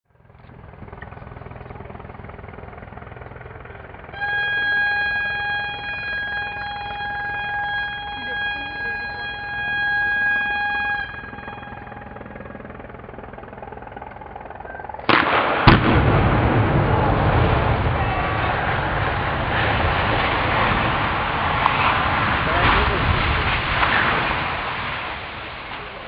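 Explosive demolition of a concrete sugar silo: a steady horn tone sounds for about seven seconds, then a few seconds later the charges go off in one sudden blast, followed by a long, loud rumble as the silo collapses.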